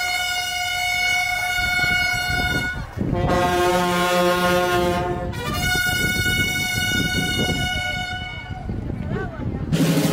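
Brass band of trumpets, trombones and sousaphone playing three long held chords, each lasting two to three seconds with short breaks between, then softer for the last second or so.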